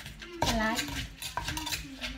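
Wooden pestle pounding papaya salad in a clay mortar: dull thumps about a second apart, with a metal spoon scraping and clinking against the mortar as the mix is turned.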